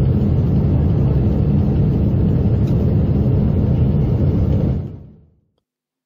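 Loud, steady rumble of a Boeing 777's failed Pratt & Whitney engine after an uncontained failure, heard from inside the cabin. It fades out about five seconds in.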